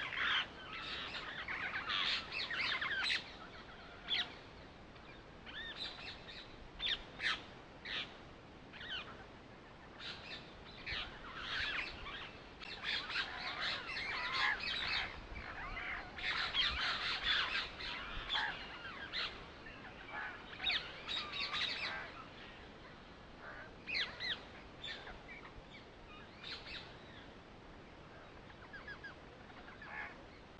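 Birds chirping and calling, a busy run of many short chirps that thins out in the last third.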